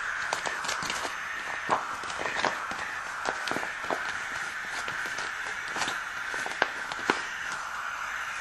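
Oxygen hissing steadily from the supply into a non-rebreather mask's plastic reservoir bag as the bag fills, with scattered light clicks.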